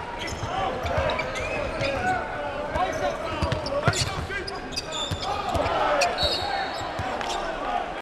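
Basketball game sounds on a hardwood court: sneakers squeak in many short, sharp glides, and a ball bounces with hard thuds, the loudest about four seconds in. Under them runs the steady din of an arena crowd.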